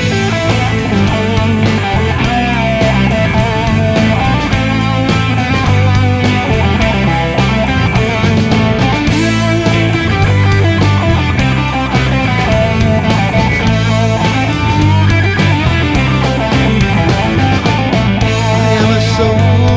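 Loud rock music in an instrumental stretch with no singing, led by guitar over a steady beat.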